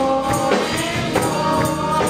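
Gospel singing by a small group of women's voices at microphones, with a tambourine struck in a steady beat about twice a second.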